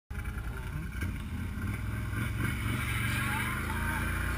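ATV engine running, heard from the rider's seat, picking up a little after about a second as the quad sets off up a rocky trail.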